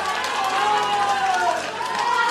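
Theatre audience cheering and calling out over applause: many voices shouting at once amid clapping.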